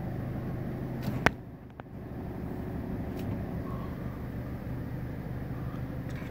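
Car engine and road noise heard from inside the cabin while driving: a steady low hum, briefly quieter just before two seconds in. A single sharp click comes a little over a second in.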